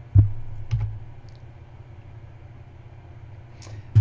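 Two short clicks on a computer keyboard about half a second apart, each with a dull low thump, then a faint steady low hum.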